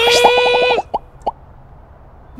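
Cartoon sound effects: a held, bleating pitched note that wavers rapidly and cuts off just under a second in, then two short pops a third of a second apart.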